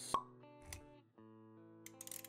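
Short intro music sting of held, plucked-sounding notes, with a sharp pop just after the start and a soft low thump a little later. The music dips briefly near the middle, then the notes come back.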